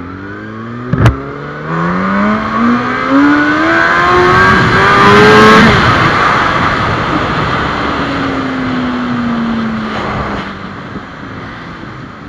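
Sport motorcycle engine pulling hard, its note rising steadily for about four seconds, then the throttle closes and the engine winds down slowly as the bike slows. A sharp knock comes about a second in, and loud wind rushes over the microphone throughout.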